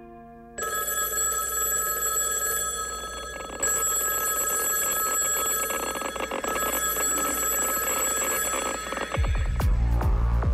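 A telephone bell rings in long rapid trills, starting about half a second in, with a short break about three seconds in. Near the end, loud deep electronic music cuts in.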